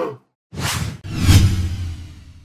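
Two whoosh sound effects of a logo sting, the first about half a second in and the second, louder with a low rumble under it, about a second in, fading out near the end. At the very start the tail of a lion-roar effect dies away.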